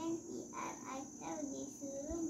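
A young girl's voice reading aloud in a drawn-out, sing-song chant.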